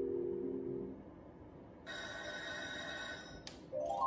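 Merkur slot machine's electronic sound effects. A low chord of held tones ends about a second in. A bright, high ringing tone starts about two seconds in and is cut off by a click. Short rising chime notes follow near the end as a win is counted up.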